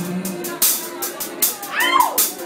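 A live band with electric guitars and a drum kit playing between sung lines, with sustained chords under repeated cymbal hits. Near the end a short high sound glides up and back down over the band.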